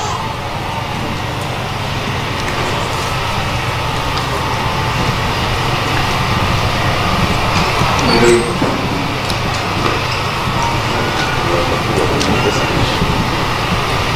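A steady low hum under the indistinct murmur of a seated crowd, slowly growing louder, with a brief louder patch of voices about eight seconds in.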